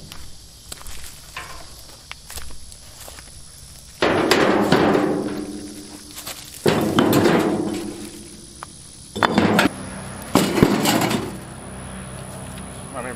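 Broken concrete chunks being dropped into a plastic wheelbarrow: four loud heavy thuds, each with a short rattling tail as the pieces settle. The first comes about four seconds in and the others follow over the next seven seconds, after quieter scraping and handling at the start.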